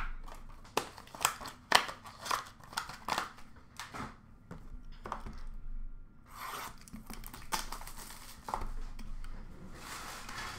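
A sealed box of trading cards being torn open by hand: a quick run of sharp rips and clicks of wrapper and cardboard, then softer crinkling and rustling of the packaging from about six seconds in.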